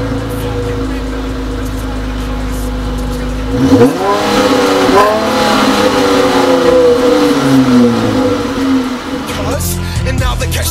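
Dodge Challenger SXT's 3.6-litre V6 idling at the exhaust tip, then revved several times from about three and a half seconds in, the pitch climbing and falling with each blip, with one longer rev that falls away slowly.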